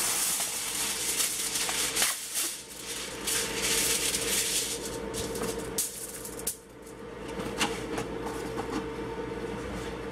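Aluminium foil crinkling and rustling as sheets are pulled from the roll and spread out flat. The crinkling comes in bursts over the first five seconds, with a few sharp crackles after that.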